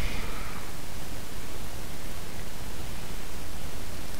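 Steady hiss of a voice-over microphone's background noise, with no distinct events.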